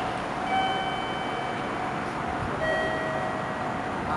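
Steady station platform background noise with two soft chime tones, the first about half a second in and the second about two seconds later, each ringing for about a second.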